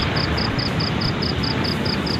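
Steady rushing outdoor noise, with a faint high-pitched pulsing above it, about five beats a second.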